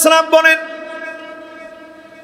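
A man's chanted sermon voice, amplified through a microphone and loudspeakers, holds one steady note that breaks off about half a second in. The note then rings on and fades slowly away.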